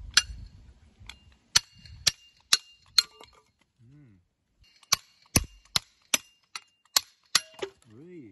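Small hatchet chopping a split firewood stick into kindling: a series of sharp wooden knocks, roughly two a second, in two runs with a pause near the middle.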